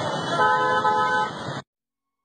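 Busy street noise with a vehicle horn honking for about a second, after which all sound cuts off abruptly into silence.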